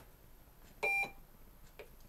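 A Morse code key sounds one short, steady beep about halfway through: a dash for the letter T, held too short.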